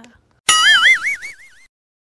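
A cartoon 'boing' sound effect: a sudden twangy tone about half a second in, its pitch wobbling quickly up and down as it fades out over about a second.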